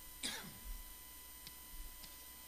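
A person clearing their throat once, a short harsh burst with the voice dropping in pitch.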